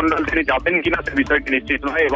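Continuous news narration by a voice, over a steady background music bed.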